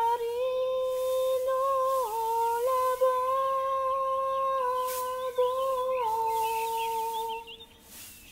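A single voice humming a slow wordless melody in long held notes, with small dips and steps in pitch, breaking off shortly before the end.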